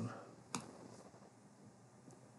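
A single sharp click about half a second in, made in selecting a board on the computer, followed by faint room tone.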